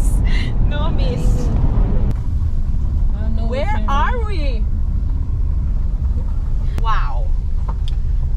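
Steady low rumble of road and engine noise heard inside a moving car's cabin, with brief bits of voice now and then.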